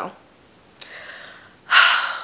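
A woman's voice trails off on a word, then after a pause she takes a quiet breath and a short, sharp, loud breath near the end.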